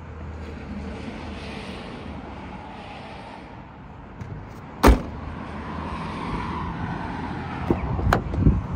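The 2011 Volkswagen GTI's hatchback tailgate is shut with one loud bang about five seconds in, over a steady background of traffic noise. A few lighter clicks follow near the end.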